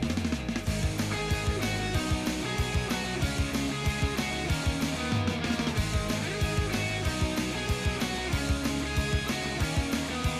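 Background music with guitar and a steady drum beat.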